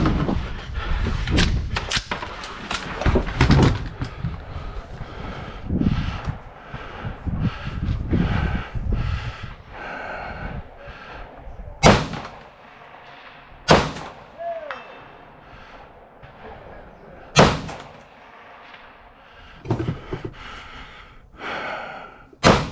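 Three rifle shots from a scoped rifle, fired a few seconds apart in the second half, the second about two seconds after the first and the third some four seconds later. Before them comes a run of knocks and clunks.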